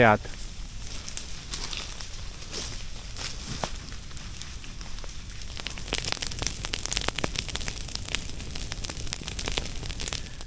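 Grass fire burning through dry grass, dead leaves and young fern shoots: a steady run of sharp crackles and snaps over a soft hiss, growing busier about six seconds in.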